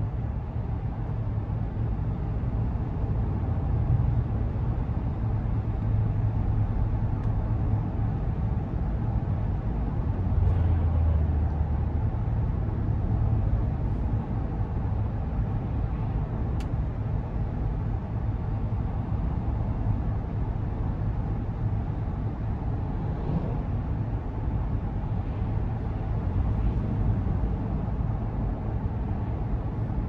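Steady low rumble inside the cabin of a 2022 Chevrolet Tahoe RST driving at cruising speed: tyre and road noise with the hum of its 5.3-litre V8, swelling slightly about ten seconds in.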